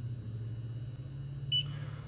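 A single short, high beep about one and a half seconds in from a dental LED curing light, its timer cue during a curing cycle, over a steady low hum.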